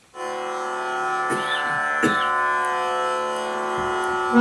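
Harmonium coming in a moment after the start and holding a steady, rich reed tone, the slow opening aalap of Raga Ahir Bhairav. Two light clicks are heard around the middle.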